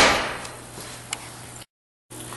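A single sharp thump with a short room echo, then a faint steady hum from the aquarium air pump that bubbles air through the sample during the aeration-oxidation test, with one small click. The sound cuts out completely near the end.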